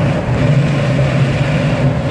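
Steady rush of airflow and a low drone inside a glider cockpit in flight, with the side window open to the passing air.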